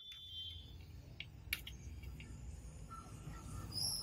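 Faint room noise with a low hum and a few light clicks, the loudest about a second and a half in, from handling a circuit board. A short high chirp comes just before the end.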